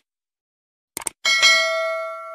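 Subscribe-button animation sound effects: a quick double click about a second in, then a bell ding that rings on and slowly fades.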